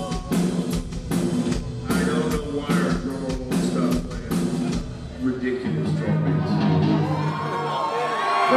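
Live heavy metal band playing loud: drums pounding under distorted electric guitars. About five and a half seconds in the drums stop and a held guitar chord rings on.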